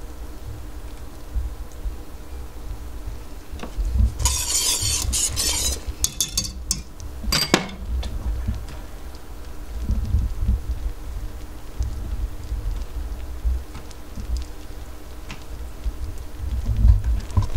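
A utensil stirring and scraping inside a stainless steel pot of boiling cocoa-sugar mixture. A stretch of scraping comes about four seconds in, followed by a few clinks against the pot, the sharpest one about seven and a half seconds in.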